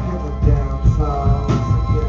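Live rock band playing: a drum kit keeps a steady beat about twice a second under electric bass, electric guitar and keyboard, with one note held through the second half.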